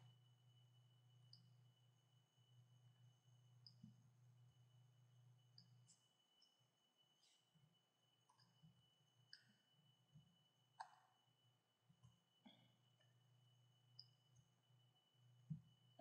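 Near silence broken by faint, scattered computer keyboard and mouse clicks, about a dozen in all, with a low hum during the first six seconds.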